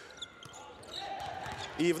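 A basketball being dribbled on a hardwood court: a few faint knocks over the low background noise of the arena.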